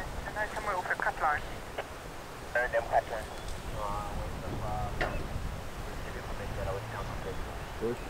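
Low, indistinct human voices talking in short snatches, over a faint steady low rumble.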